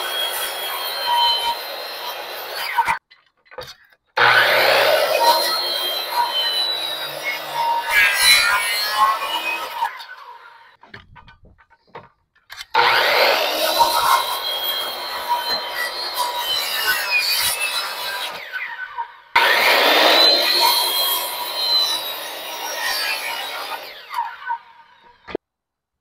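Makita circular saw cutting into a pine hip rafter in four separate passes. Each pass starts with the motor whining up to speed and fades out as it winds down, with short pauses between. The cuts notch out the rafter's bird's mouth.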